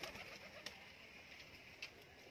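Faint domestic pigeon cooing, with two brief clicks about a second apart.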